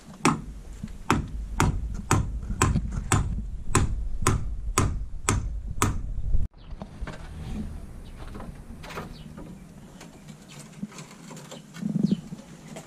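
Hammer blows on timber, about two strikes a second, as wooden roof beams are nailed down on a block wall. The hammering cuts off suddenly about six and a half seconds in, leaving a few faint knocks and a single thump near the end.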